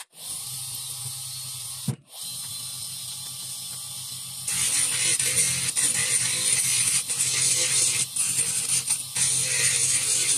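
Small electric bench motor with a drill chuck spinning a dental bur, running with a steady hum; it cuts out briefly about two seconds in and starts again. About halfway through the sound turns louder and harsher as a small dental workpiece is pressed against the spinning bur and ground, with short breaks where it is lifted off.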